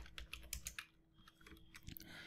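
Faint computer keyboard typing: a quick run of keystrokes in the first second, a short pause, then a few more keystrokes near the end.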